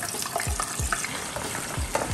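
Pork belly frying in a pot of hot oil, which is at about 180 degrees, with a steady sizzle. A wooden spoon stirs coconut-milk sauce in a pan alongside, giving a few short scrapes.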